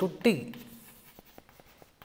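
Chalk writing on a blackboard: faint scratching, with a few short taps of the chalk in the second half.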